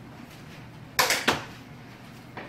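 Two sharp knocks about a third of a second apart, each with a short ring after it: a thrown light plastic ball striking hard surfaces and bouncing.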